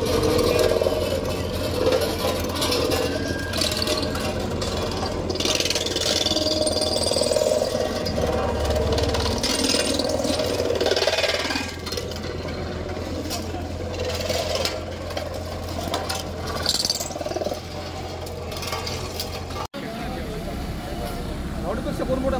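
Diesel engine of a JCB tandem road roller running steadily as its steel drum rolls onto and crushes a row of metal exhaust silencers, with irregular metallic crunching and creaking over the engine drone. Voices mix in.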